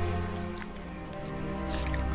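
Soft background music, with water dripping and a short splash near the end as a face is washed with a wet cloth.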